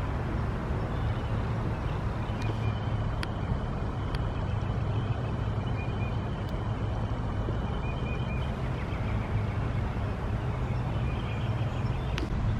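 Steady low rumble of distant road traffic. A faint high thin tone sits over it for several seconds in the middle.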